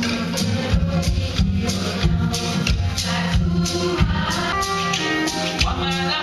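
Live ensemble playing an instrumental passage: oud, cello and violins holding melodic lines over a steady percussion beat of about three strokes a second.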